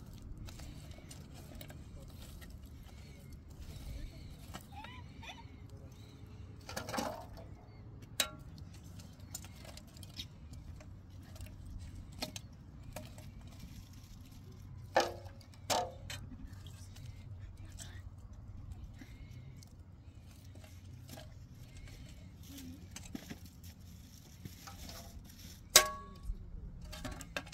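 Metal fire shovel and tongs scraping and clinking as hot coals are moved from an open wood fire into a metal brazier. There are a few sharp clinks, the loudest about 15 and 16 seconds in, over a low steady background noise.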